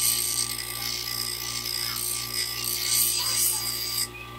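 Bench grinder wheel grinding the steel edge of a small hand-held carving knife: a steady motor hum under a hissing, scraping grind that swells and eases as the blade is pressed and moved, stopping abruptly at the end.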